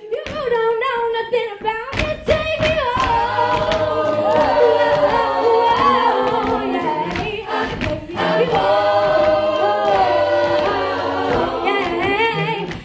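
A cappella vocal group singing: a female lead voice carrying the melody over backing voices, with no instruments.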